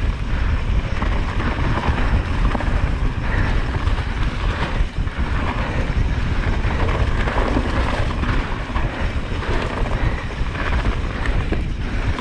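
Wind rushing over the microphone of a camera on a mountain bike riding fast downhill, mixed with the tyres rolling over dirt and dry leaves. A steady, loud rumble with irregular crackle and no pauses.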